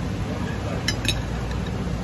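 Metal knife and fork clinking twice against a ceramic plate about a second in, over a steady low background rumble.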